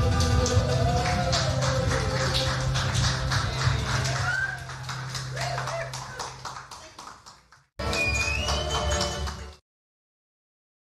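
The last chord of an acoustic string band rings out and fades, the upright bass note lasting longest, while a small audience claps and calls out. The sound fades out around seven seconds in. Near the end a short two-second burst with a high held tone cuts in and then stops suddenly.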